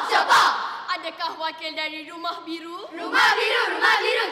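A large group of children's voices chanting and calling out together in unison, with loud shouted lines at the start and near the end and long held notes in the middle.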